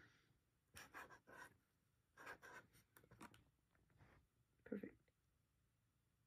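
Faint, short scratching strokes of a marker tip drawing on paper: several quick strokes in small groups.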